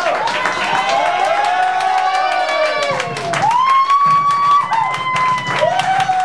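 A man singing long, high held notes without words, each one swooping up and sliding down at the end, over a crowd clapping and cheering.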